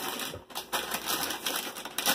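Plastic snack packaging crinkling as it is handled, a dense, irregular run of crackles.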